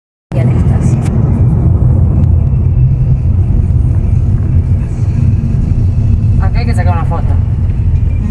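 Steady low rumble of road and engine noise inside a moving Peugeot car's cabin as it drives along a country road.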